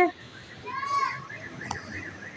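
Distant voices from the street below, with one drawn-out, high-pitched call about a second in, like a child calling out, and a single sharp click shortly before the end.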